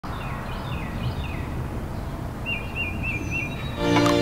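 Outdoor ambience: a steady low background rumble with birds chirping. There are a few falling chirps, then a short run of repeated warbled notes. Music with sustained tones comes in just before the end.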